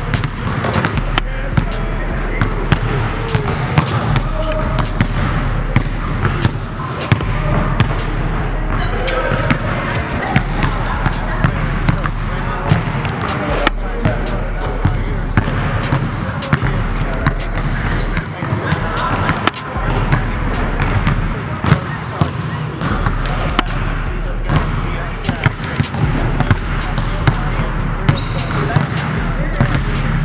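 Basketballs dribbled on a hardwood gym floor: a run of sharp bounces, irregular and overlapping as several balls are worked at once, with a few brief high squeaks of sneakers on the court.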